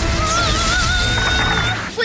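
Dramatic trailer music, opening on a sudden crash-like hit, then a held, wavering high note over a bass-heavy bed, with a brief falling whoosh about half a second in.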